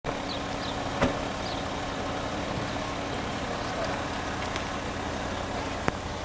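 Steady outdoor background noise with a low rumble, broken by a sharp click about a second in and another near the end.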